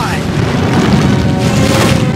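Cartoon sound effect of a continuous low rumble, like the ground shaking, with background music over it.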